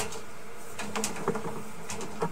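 Sewer inspection camera rig giving a steady electrical hum, with a few light clicks and ticks as the push cable is fed farther down the line.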